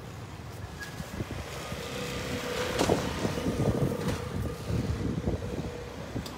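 Street traffic passing close by: a vehicle's engine and tyres swell up about two seconds in and ease off near the end, over a low rumble of wind buffeting the microphone.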